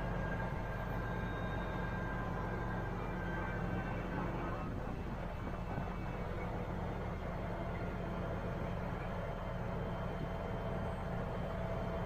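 A mobile crane's diesel engine running steadily, a constant low hum with a faint higher whine over it.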